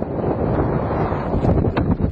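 Wind buffeting the microphone: a steady low rushing noise, with a brief tick or two near the end.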